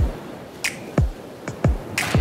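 Background music with a beat of deep kick-drum hits about once a second and finger snaps between them.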